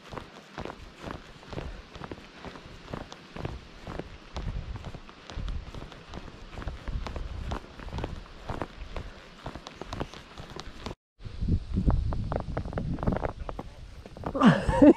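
Steady footsteps crunching along a sandy dirt trail, with low rumbling noise underneath. The sound breaks off abruptly about eleven seconds in, then resumes with a louder low rumble.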